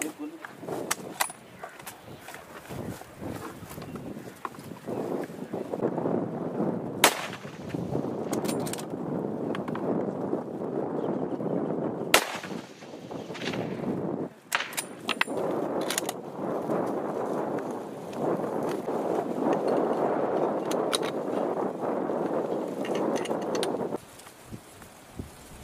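Two loud, sharp gunshots about five seconds apart, the first about seven seconds in, with several fainter cracks scattered around them. A continuous din runs underneath from about five seconds in.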